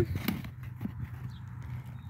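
Small hand trowel scooping dry clumps of chicken manure out of a plastic bucket: a few short scrapes and knocks of the trowel against the bucket and the clumps, over a steady low hum.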